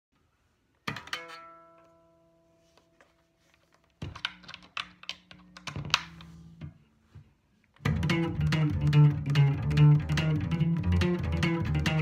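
Electric bass guitar plucked with the fingers: a single note rings out and fades about a second in, a few scattered notes follow from about four seconds, then from about eight seconds a steady run of even eighth notes with sharp plucking attacks.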